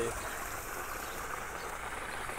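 Low, steady outdoor background noise with no distinct events.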